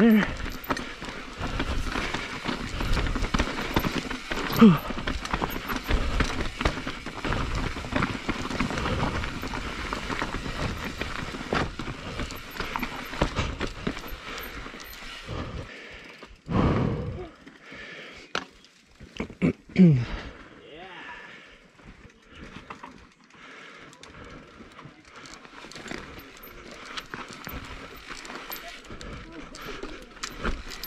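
Mountain bike rolling over loose rocks: tyres crunching and the bike clattering and knocking over stones for about the first fifteen seconds. After that it goes quieter, with the rider sighing, clearing his throat twice and breathing hard.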